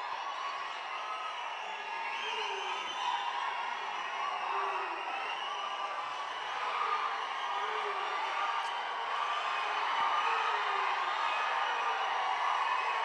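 A large audience cheering and whooping steadily, many voices shouting at once.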